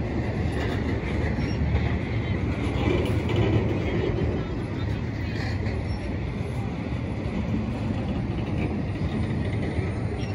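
Empty intermodal flatcars of a freight train rolling slowly past: a steady rumble of steel wheels on rail.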